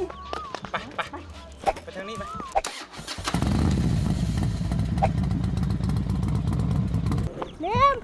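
Surfskate wheels rolling on asphalt: a steady low rumble that starts about three seconds in and cuts off abruptly about a second before the end.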